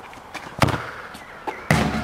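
A sharp knock about half a second in, then a louder bang shortly before the end, followed by a low rumble.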